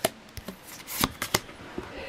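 Pokémon trading cards and a paper pack insert being flipped through by hand, with several short, sharp snaps of card against card as each one is moved on.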